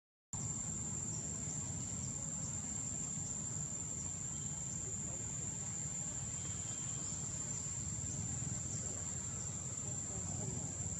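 Steady high-pitched drone of forest insects with faint short chirps repeating, over a low background rumble. The sound cuts out completely for a moment at the very start.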